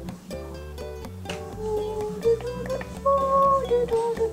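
Background music led by plucked strings, a light tune with a held melody line over a steady low bass.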